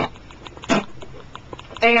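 A man's two short, noisy breaths, about three quarters of a second apart, followed by the start of a spoken word near the end.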